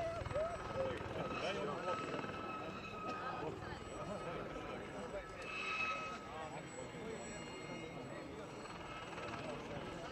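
Gazelle helicopter flying a display pass, with a steady high-pitched whine that swells briefly about six seconds in. Spectators talk in the background throughout.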